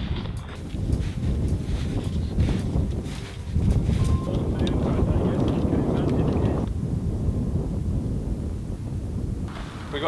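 Wind buffeting an outdoor microphone: a low, uneven noise that rises and falls. The higher part of the noise thins out about two-thirds of the way through.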